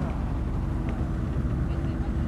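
Motorboat under way, its engine giving a steady low rumble, with a faint steady hum joining about a second in.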